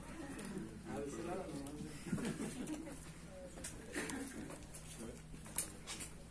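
Quiet, indistinct murmur of voices in a room, with a sharp click near the end.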